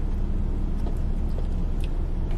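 Steady low rumble of a car's idling engine, heard from inside the cabin, with a few faint light clicks.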